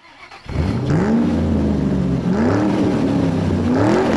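Car engine revving, rising in pitch three times with short holds and drops between.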